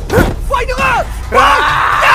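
A man's voice shouting in short cries, then a long, loud yell from about one and a half seconds in.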